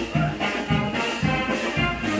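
Wind band playing a brass-led tune over a steady, regular beat in the low notes.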